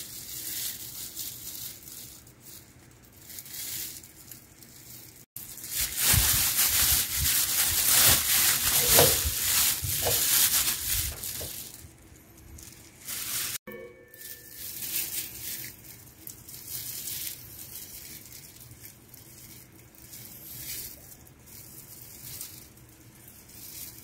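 Thin plastic takeout bags crinkling and rustling as food is squeezed out of them onto plates. The crinkling is loudest through a long stretch in the middle, with quieter handling before and after.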